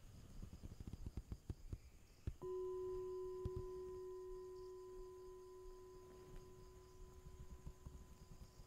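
A singing bowl struck once about two and a half seconds in, ringing with a clear steady tone that slowly fades. The stroke marks the start of the group's chanting and prostrations. Before it there are faint knocks and rustles.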